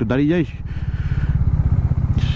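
Bajaj Dominar 400's single-cylinder engine running under the rider, an even string of exhaust pulses getting steadily louder.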